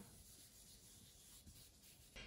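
Faint, soft rubbing of a blending brush sweeping ink across cardstock.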